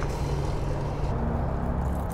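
Steady low rumble of distant road traffic, with a faint engine-like hum in the second half.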